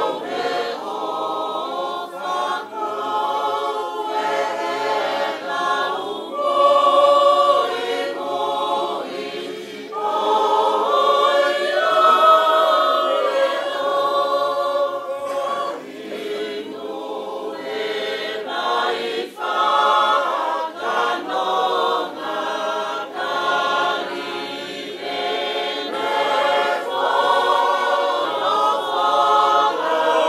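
A group of voices singing a Tongan song together in harmony, unaccompanied, in long phrases.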